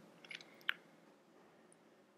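A few faint, small clicks of a plastic miniature ship and its base being set down and adjusted on the game mat, with one sharper click under a second in, over faint room tone.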